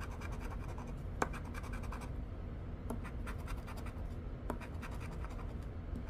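A coin scraping the scratch-off coating from a lottery ticket in a series of short strokes, with one sharper click about a second in.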